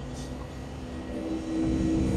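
DEVELON excavator's diesel engine running steadily, heard from inside the cab while the machine swings. The engine gets louder about one and a half seconds in.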